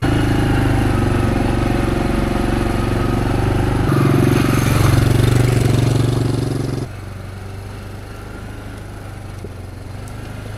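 Quad bike engine running steadily as it is ridden along a dirt track. It gets louder about four seconds in, then drops to a quieter level about seven seconds in.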